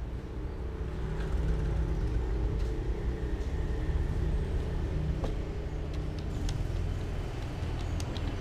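Steady low engine rumble of road traffic, with a few sharp light clicks in the second half.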